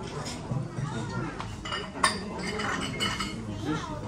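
Tableware clinking, with one sharp clink about two seconds in, over people talking in the background.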